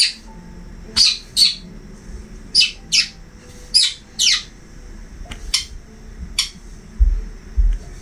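A bird chirping: about eight short, sharp, high chirps, several coming in quick pairs, with two low dull knocks near the end.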